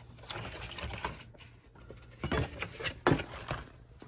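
Rustling and handling of a cardboard box and paper recipe cutouts, with a few sharp knocks about two and three seconds in.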